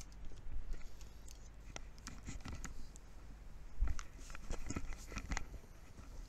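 Light clicks, taps and rustling of small objects being handled close by, with a duller knock just before four seconds in and a quick run of clicks after it.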